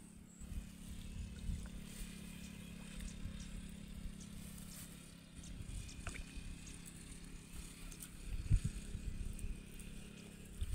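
Wind rumbling on a phone microphone and handling noise as the phone is carried, over a steady low hum, with a single knock about eight and a half seconds in.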